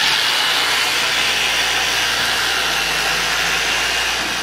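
Handheld electric carcass saw running steadily as it cuts a hanging side of beef in half, with a faint high whine over the motor and blade noise.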